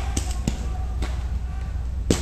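A few scattered paintball marker shots, heard as isolated sharp pops, over a steady low rumble.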